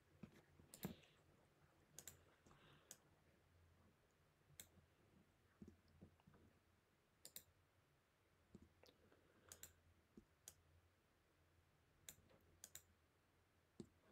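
Faint, irregularly spaced clicks of a computer mouse, about a dozen in all, over near-silent room tone.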